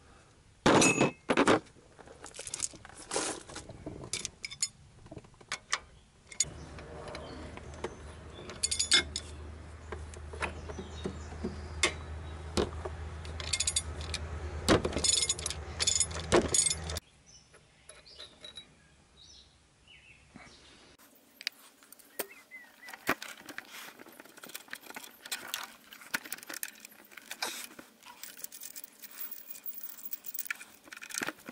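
Metal clinks and clicks from a socket set: chrome steel sockets and a 3/4-inch-drive ratchet being handled in their plastic case, then a socket fitted onto the crankshaft pulley bolt. A low steady hum sits under the clinks for several seconds in the middle.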